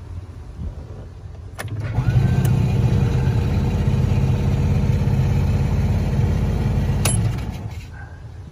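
The car's 125cc engine is started: a click, then the engine catches about two seconds in and runs steadily for about five seconds before it is switched off and stops abruptly.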